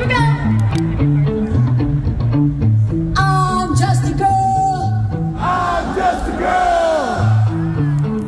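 Live rock band playing a repeating bass-and-drum groove through a festival PA. A voice sings long held notes over it through the middle, and the notes slide downward near the end.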